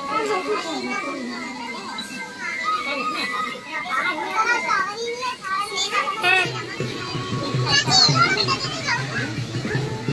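Children's voices and chatter mixed with adults talking, over background music.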